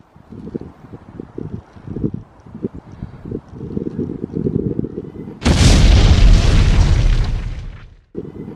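Explosion sound effect: a loud boom with a deep rumble, starting about five and a half seconds in and fading out over about two and a half seconds before it is cut off.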